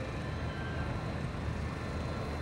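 Steady low rumble of a formation of MiG-29 Fulcrum jet fighters in flight, their twin turbofan engines heard from the ground.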